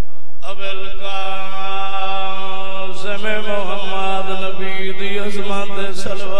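A man's voice chanting a mourning recitation into a microphone, starting about half a second in with a long held note, wavering and bending in pitch around the middle, then holding a note again.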